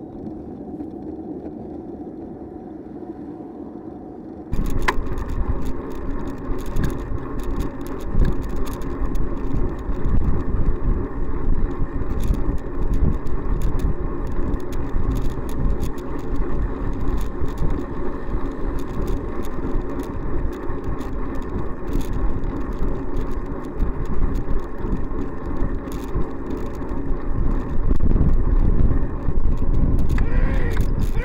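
Riding noise from a bicycle-mounted camera: road and wind rumble with frequent small rattles and clicks. It starts abruptly about four and a half seconds in, after a quieter, steady stretch of road noise.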